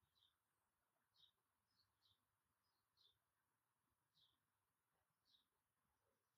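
Near silence, with a faint bird chirping: short, high chirps about once a second.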